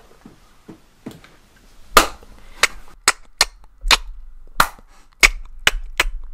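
A run of sharp, separate bangs, about eight of them unevenly spaced over four seconds, starting about two seconds in after a few faint clicks.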